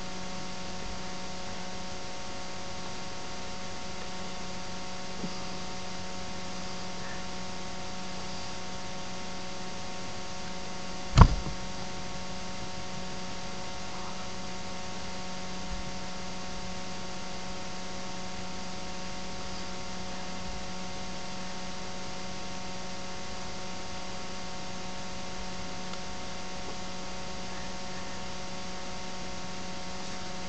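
Steady electrical mains hum, a low tone with several fainter higher tones over a light hiss, broken once about eleven seconds in by a single sharp knock.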